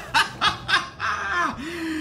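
A man laughing: a few quick bursts, then a longer drawn-out laugh.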